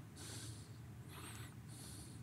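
Faint breaths close to a podium microphone, three soft noisy puffs over a low steady hum.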